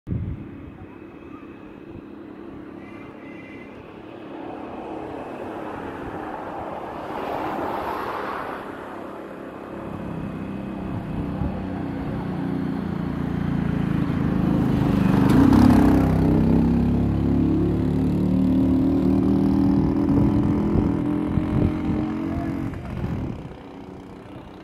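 Motor vehicle sound on a road: an engine running and growing louder over the second half, with two swells of tyre and passing noise about a third of the way in and again past the middle.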